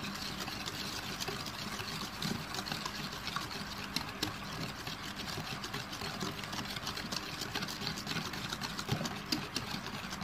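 Wire hand whisk beating an egg into a creamed ghee-and-sugar cake batter in a bowl: a steady run of rapid ticks and swishes as the wires strike the bowl and churn the batter.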